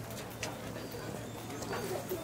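Outdoor ambience of distant people talking, with a few short high-pitched calls and a low cooing call near the end.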